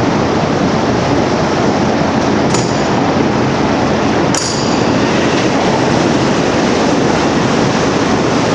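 A forklift moving with a loaded pallet, under a steady loud rushing noise, with two sharp metallic clanks about two seconds apart, the second just past halfway.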